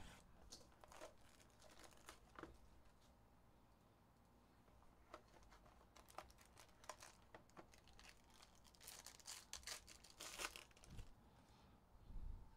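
Faint tearing and crinkling of plastic wrapping as a trading card box and its pack are opened by hand. There are light crackles throughout, busiest in the second half.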